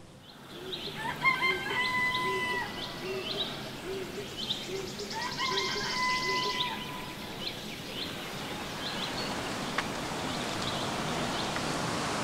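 A rooster crowing twice, each a long held call, over small birds chirping and a low call repeating about twice a second. A steady hiss grows louder over the last few seconds.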